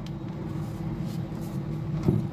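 Steady low background hum, with faint small ticks near the start and about a second in as hands grip and twist the aluminium grille of a Bang & Olufsen speaker to release its bayonet catch.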